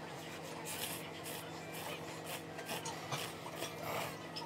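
A person slurping ramen noodles from chopsticks in two runs of quick, hissy sucking bursts, over a steady low hum.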